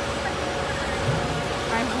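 Fire truck's diesel engine running steadily, a constant mechanical noise with a faint steady whine through it. A voice says a couple of words near the end.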